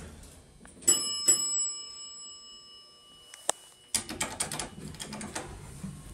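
Dover elevator's chime struck twice in quick succession, a bright bell ringing out and dying away over about two seconds. A click and irregular rattling and clicking follow in the second half.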